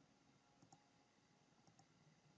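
Near silence, with a few very faint computer mouse clicks.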